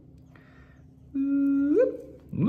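A man humming one short held note that slides up in pitch at its end, starting about halfway through.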